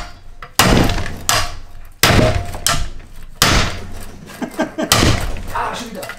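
Repeated heavy hammer blows on steel, about one every second and a half, each with a short metallic ring. They are driving out the seized eccentric bolt of a BMW E36 rear control arm.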